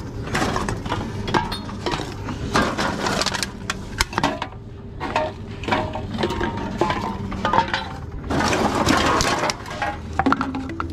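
Empty aluminium drink cans clinking and clattering as they are handled in a plastic basket and fed one at a time into a TOMRA reverse vending machine, whose intake mechanism rattles and crushes as it takes them. A steady low machine hum runs underneath, and the loudest rattle comes near the end.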